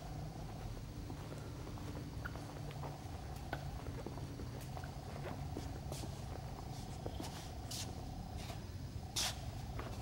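Steady low hum of a large hangar's room tone, with scattered faint ticks and a soft shuffle of movement.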